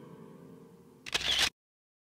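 Soft sustained music tones fading, then about a second in a loud camera-shutter click sound effect marking the freeze to a still photo, after which the sound cuts off abruptly to dead silence.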